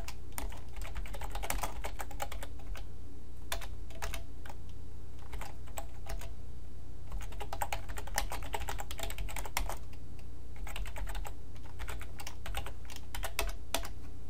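Computer keyboard typing: irregular runs of keystrokes with a short lull about halfway through, over a steady low hum.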